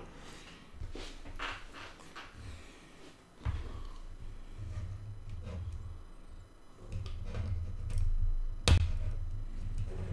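Faint handling sounds on a tabletop: small clicks and knocks of hands working the robot arm's plastic parts and wiring, with a low rumble under them and one sharp click near the end.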